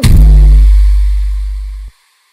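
A single long, very deep electronic bass note from a bass-boosted remix, struck once and slowly fading, then cutting off suddenly near the end: the closing bass hit of the track.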